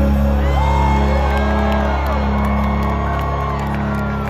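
A live country-rock band's closing chord held and ringing out through the PA, with the crowd whooping and cheering over it.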